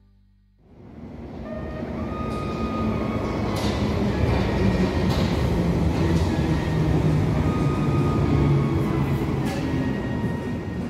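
London Underground tube train running into a deep-level station platform. A loud rumble of wheels and traction motors builds up over the first couple of seconds and then holds, with faint whining tones and a few sharp clacks from the wheels on the rails.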